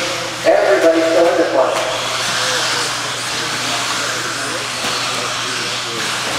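Electric RC buggies with 17.5-turn brushless motors racing on an indoor dirt track: a steady hiss of motors and tyres. A voice is heard during the first couple of seconds.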